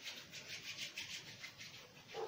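Palms rubbing together, a faint run of quick dry swishes, about five strokes a second.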